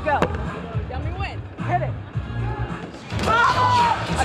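Outdoor fan-zone ambience: background music with a steady bass line under scattered crowd voices. There is one sharp knock just after the start, and a voice calls out loudly near the end.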